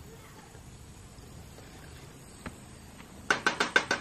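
Quiet outdoor ambience with a faint click, then near the end a domestic turkey gobbling: a fast run of short notes, about ten a second.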